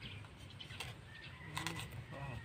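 Faint outdoor background with birds calling, and the soft cuts of a bolo knife slicing open a ripe papaya.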